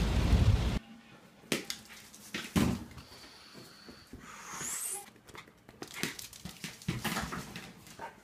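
Rain noise in a car that cuts off under a second in. Then two dogs go after a ball across a laminate floor: scattered light knocks and clicks of paws and ball, with a brief high rising squeak about five seconds in.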